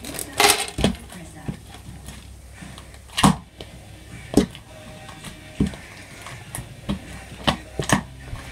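A plastic bag crinkling briefly, then scattered clicks and pops of fingers working in a plastic tub of slime mixed with foam beads, the loudest about three seconds in.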